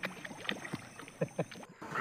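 Fish splashing at the surface of a pond: a run of short, light splashes.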